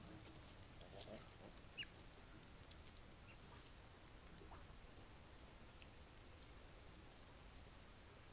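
Faint river otter chirps and squeaks on a trail-camera recording: a few short high calls, the clearest a brief falling chirp about two seconds in, over a steady hiss. These are the social calls otters typically make when they are together.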